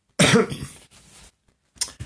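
A man coughs, clearing his throat: one sudden harsh burst about a quarter second in that trails off within a second.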